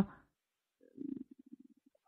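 Silence between sentences, broken about a second in by a faint, short, low vocal sound from the presenter's headset microphone. It is a brief hum that trails off into a quick creaky rattle, like a hesitation sound between phrases.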